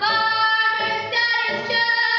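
A teenage girl singing a musical-theatre song solo, belting long held notes that step up in pitch about a second in.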